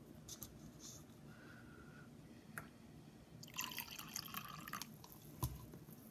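Water poured from a plastic cup for about a second and a half, a splashing trickle, followed by a sharp knock as the cup is set down on the table.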